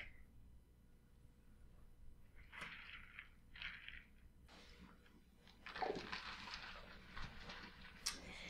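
Faint sounds of a person sipping water: two short soft swallows, then a longer, quieter rustle of movement near the end.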